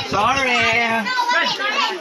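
Children's voices calling out and talking, loud, with one long drawn-out call in the first second.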